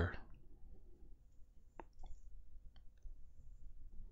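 A pause in speech: faint low background noise with a few short, faint clicks about two seconds in and again a little later.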